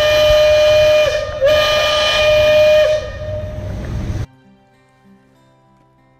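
The Liberty Belle riverboat's steam whistle blows two long blasts of one steady pitch, with a short break about a second in. Noise follows, then the sound cuts abruptly to faint music about four seconds in.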